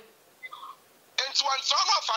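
A man speaking after a pause of about a second.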